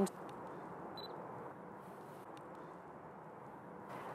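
Faint steady background noise with a few soft ticks and a brief high chirp about a second in.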